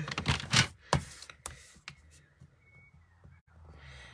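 Sliding-blade paper trimmer cutting cardstock: clicks and a few short scrapes as the blade carriage runs down the rail, mostly in the first two seconds, then quiet handling of the paper.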